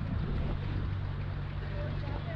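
Steady low rumble of wind buffeting a helmet-mounted action camera's microphone.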